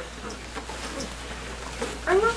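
Quiet classroom background: faint children's murmuring and a few light clicks as rekenrek (abacus) beads are slid back to clear the boards.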